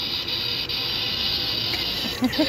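Animated Halloween prop TV playing a steady hiss of television static.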